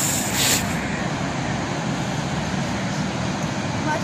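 Steady rushing noise of river water flowing hard through a barrage, with a brief hiss in the first half second.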